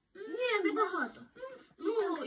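A child's high voice drawn out in a wavering, wordless sound for about a second, then a short second sound, with voice starting again near the end.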